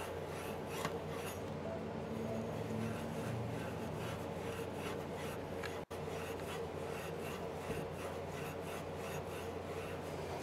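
Fine steel wool scrubbing the end of a copper water pipe, a steady scratchy rubbing in repeated back-and-forth strokes. It is scouring the oxidation off the pipe so a compression valve will seal.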